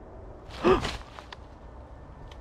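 A short, breathy vocal sound from a man, about half a second in, with a pitch that dips and rises. A couple of faint snaps follow, from footsteps on dry twigs and leaves.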